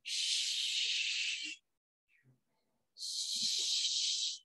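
A woman's two long, hissing breaths, each lasting about a second and a half, with a pause between them.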